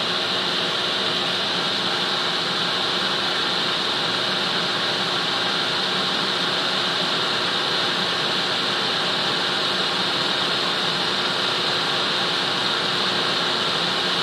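Soldering fume extractor fan running: a steady, even hiss with a faint steady hum underneath.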